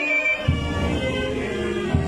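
Procession band playing a slow funeral march: sustained wind and brass chords, with two deep drum beats about a second and a half apart.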